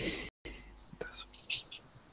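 Faint whispered speech over a video call: a few short, breathy fragments, with the audio cutting out completely for a moment near the start.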